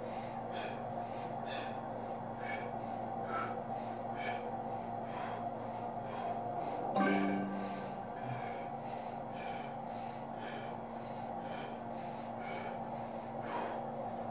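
A man breathing hard and fast through his nose, about one sharp breath a second, as he strains against an ARX adaptive-resistance leg press to failure, with a short strained grunt about halfway. A steady hum runs underneath.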